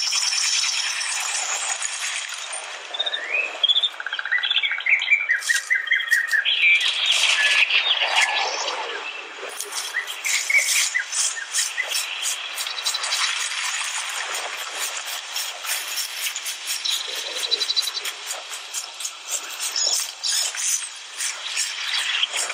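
Forest-soundscape demo clip played through the Samsung Galaxy S9's AKG stereo speakers: birds chirping and insect-like buzzing, with many small clicks and rattles. The sound is thin, with no bass.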